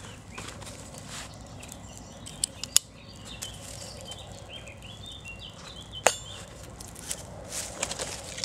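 Small wood fire crackling in a folding twig stove under a pot, with scattered sharp snaps and clicks, the loudest about three and six seconds in, and some light handling of kit. Birds chirp faintly in the middle.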